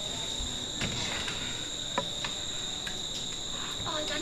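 Crickets trilling in a steady, high-pitched drone, with a few faint clicks and knocks.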